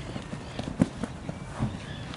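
Football players running on an artificial-turf pitch, their footfalls and touches on the ball making a string of uneven thuds. The loudest thud comes just under a second in.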